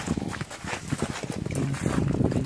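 Irregular footsteps and scuffing knocks of a person moving with a handheld phone over rough gravel ground, the phone being jostled as it moves.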